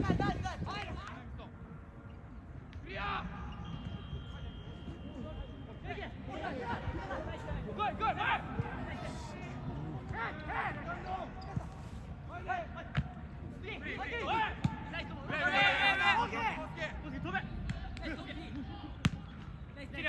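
Footballers shouting and calling to each other across the pitch during play, with a few sharp thuds of the ball being kicked.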